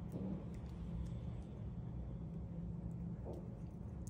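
A low steady background hum, with a few faint clicks as small parts of a hair trimmer are handled while a new cam follower is fitted.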